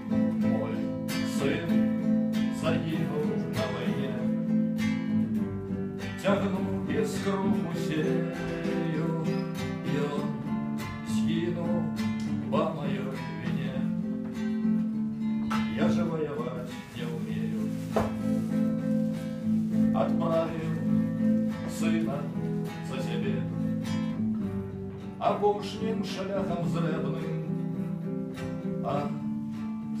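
Acoustic guitar strummed steadily, accompanying a man singing a song.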